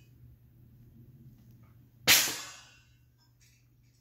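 A single sharp metallic swish from a wushu broadsword handled about two seconds in, fading out in under a second; otherwise quiet room tone.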